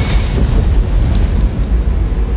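Loud, deep explosion booms in a film sound mix, with a sharper hit about a second in and music underneath; the low rumble carries on as the higher sound dies away near the end.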